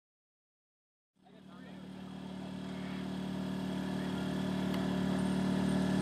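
Thunder Tiger radio-controlled model helicopter's engine and rotor running with a steady hum, starting about a second in and growing steadily louder.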